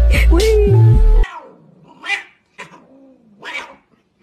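Loud music with a heavy bass line cuts off abruptly about a second in. After it, cats fighting: a series of drawn-out yowls, each sliding down and back up in pitch, much quieter than the music.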